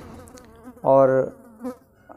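A man's voice holding a single drawn-out, flat-pitched 'aur' ('and') about a second in, a hesitation between phrases, with faint room hum around it.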